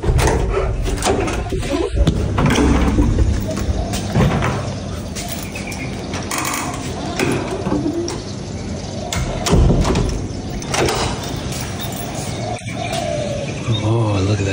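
Rustling and clatter of a handheld camera being carried and handled while walking, with scattered knocks and thumps.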